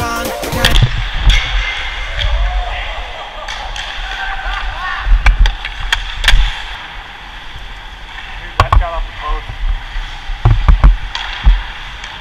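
Live ice hockey play heard from a helmet-mounted camera: skate blades hissing and scraping on the ice, with several sharp knocks of sticks and puck in clusters. Background music stops about a second in.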